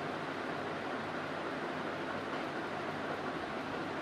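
Steady, even background hiss with no change in level and no distinct events.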